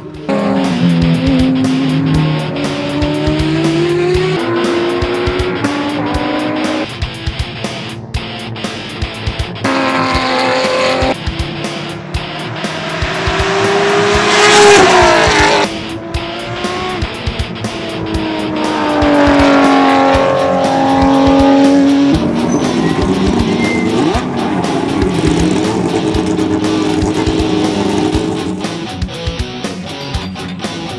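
Porsche 997 GT3 race car's flat-six engine at full throttle on track. Its pitch climbs through the gears with sudden drops at each upshift, and it is loudest as the car passes close about halfway through, the pitch falling away as it goes.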